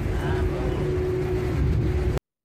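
City street background noise: a low traffic rumble with a steady hum and faint voices of passers-by.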